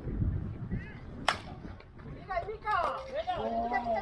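Baseball bat striking a pitched ball: a single sharp crack about a second in, followed by players' shouts.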